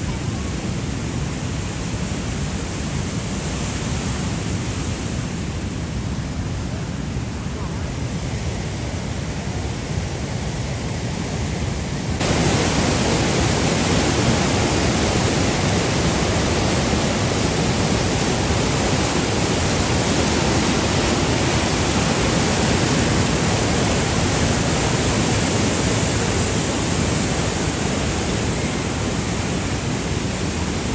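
A fast mountain river rushing over boulders in white-water rapids, a steady, dense rush of water. About twelve seconds in it jumps suddenly louder and fuller, as the rapids come much closer.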